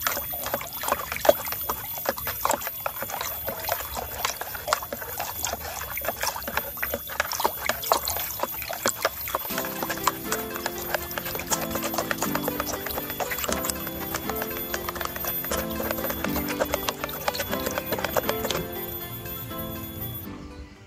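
Water splashing and sloshing in a plastic bucket as it is stirred by hand, in many quick irregular splashes that stop shortly before the end. Background music comes in about halfway.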